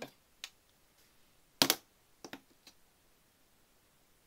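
Handling clicks of an Apple Watch against its magnetic charging puck: a small click, one louder clack about a second and a half in, then a few light clicks.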